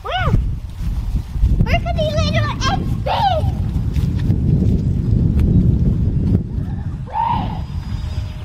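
Children's short, high-pitched wordless calls and exclamations, several in a row, over a steady low rumble of noise on the microphone.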